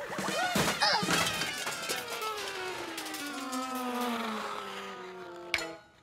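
Cartoon fall sound effect over music: a long, smooth falling pitch glide, then a sharp crash about five and a half seconds in, as an animated robot slips and tumbles on the ice.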